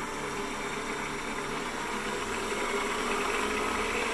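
PM-728VT milling machine spindle running and speeding up from about 2300 RPM as the speed-control voltage is raised, a steady hum of several tones that gets slightly louder.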